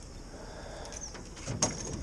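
Quiet outdoor ambience with a faint short bird chirp about a second in, and a brief handling knock about one and a half seconds in.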